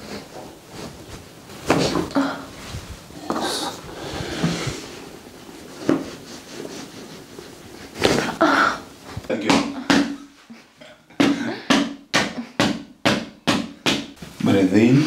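Sharp joint cracks from a chiropractic neck and upper-back adjustment, with breaths in between; near the end comes a quick run of about eight sharp cracks or clicks, close together.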